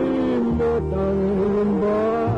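Recorded music playing on the radio broadcast: a song with held bass notes and a gliding melody line.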